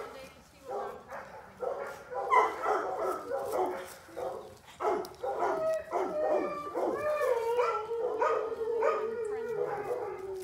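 A dog barking and yelping in a quick run of short cries, then from about seven seconds in one long, drawn-out, wavering cry.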